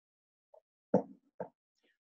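A man gulping hot tea from a mug: two short swallowing sounds about half a second apart, the first the louder.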